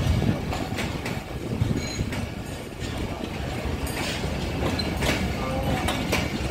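Passenger coaches of a departing express train rolling along the track, with a steady low rumble and irregular wheel clicks over the rail joints.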